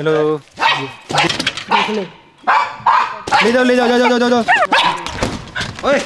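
A small dog barking and yipping in short, sharp calls, with a few high-pitched yips near the end.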